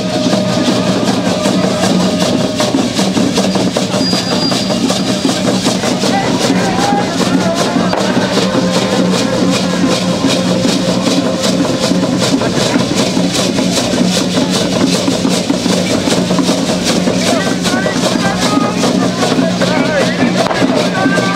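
Yoreme tenábari cocoon leg rattles and hand rattles of many dancers shaking in a dense, continuous rhythm of clicks, with a drum beating and crowd voices mixed in. A steady low hum runs underneath.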